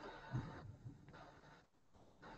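Quiet room tone with two faint, brief low knocks in the first second.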